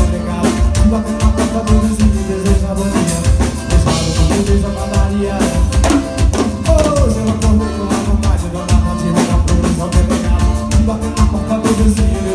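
Live band playing through a PA, with a drum kit keeping a steady beat under acoustic guitar and other amplified instruments.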